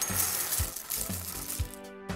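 Sound effect of hard cereal pieces pouring and clinking into a bowl, over light background music; the clatter tails off near the end.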